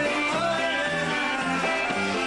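Live polka band playing a medley, with a steady oom-pah bass beat under a trumpet melody.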